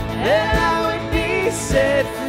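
Live worship band playing a slow song with acoustic guitar and a steady low beat about twice a second, with a singing voice sliding up into a held note near the start.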